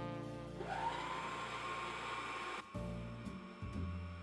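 Vitek stand mixer's electric motor starting up at its lowest speed: a whine that rises in pitch and then holds steady for about two seconds before cutting off suddenly, over background music.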